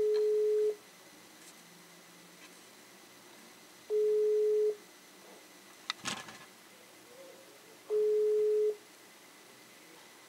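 Smartphone ringback tone of an outgoing video call waiting to be answered: three long single-pitch beeps, each just under a second, spaced about four seconds apart.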